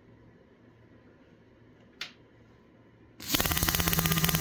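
A single click about two seconds in, then, a second later, a 300 litre-per-hour high-pressure electric fuel pump kicks on running dry: a sudden loud, rapid buzzing rattle over a steady low hum.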